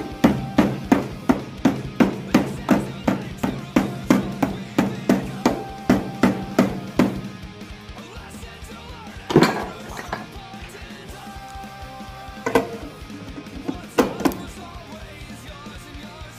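Hammer striking the rusted steel of a car body around a rust hole: a quick run of blows, about three a second, then a pause and three single heavier strikes further apart.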